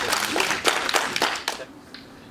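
Small audience clapping by hand, dying away about one and a half seconds in.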